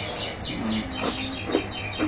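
A small bird chirping a quick run of short, high, falling notes, about five a second, that stops about a second and a half in.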